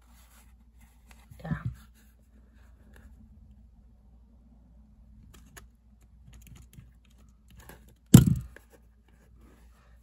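Crop-A-Dile hole punch and fabric cover being handled: faint rustling and small clicks, then one loud sharp clunk about eight seconds in as the punch closes or is set down on the work table.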